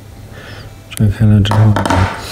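A sharp click about a second in as the Honda CR-V smart key fob and its metal emergency key are handled, followed by a person talking through the rest.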